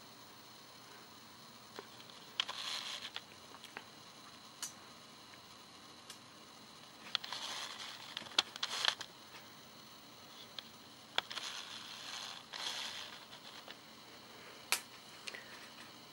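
Handling noise close to the camera: scattered sharp clicks and short rustles a second or more apart, as the camera is adjusted by hand.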